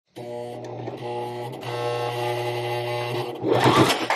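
Brother Strong & Tough ST371HD sewing machine running steadily, stitching through folded denim in a few runs with brief pauses. It stops about three and a half seconds in, and a rising whoosh follows.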